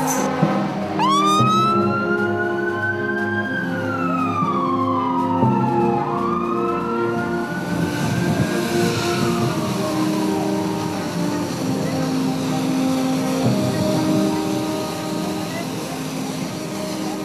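Fire truck siren wailing in slow rising and falling sweeps, two sweeps overlapping for a few seconds before fading out in the second half. Steady background music plays underneath.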